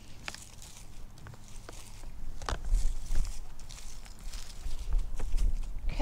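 Scattered rustles and light crunches of wood-chip mulch being worked by gloved hands, with a few sharp clicks, over a low rumble of wind on the microphone.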